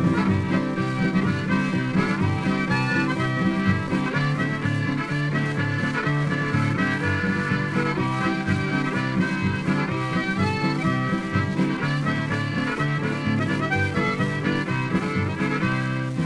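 Harmonica and acoustic guitar playing an instrumental passage, played back from a 78 rpm shellac record with no voice.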